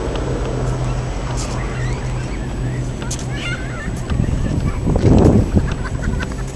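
Outdoor harbourside ambience: a steady low hum under general background noise, with a few short high chirping calls in the middle and a louder low rush about five seconds in.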